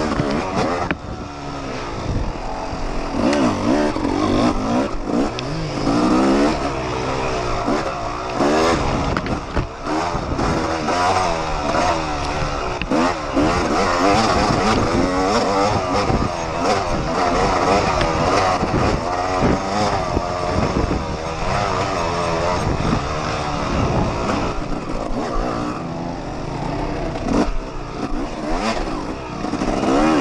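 Yamaha YZ250 two-stroke dirt bike engine ridden hard on a trail, its pitch rising and falling continuously with the throttle, heard close up from the rider's camera.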